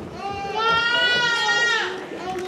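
Young voices singing one long, high held note that slides down at the end.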